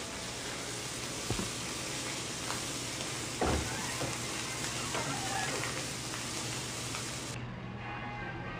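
Hamburger patties sizzling on a flat-top griddle, a steady frying hiss, with a few sharp knocks over it, the loudest about three and a half seconds in. The sizzle cuts off suddenly near the end.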